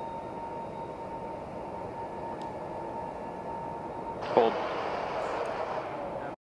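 Steady background hiss with a faint, steady high tone. About four seconds in, a radio channel opens with louder hiss and a voice calls "Hold" over the launch control loop.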